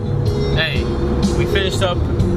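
Steady low road and engine rumble inside a moving Suburban's cabin, under a man's voice.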